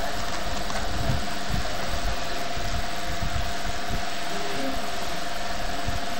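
Steady background noise: an even hiss with a constant, unchanging hum.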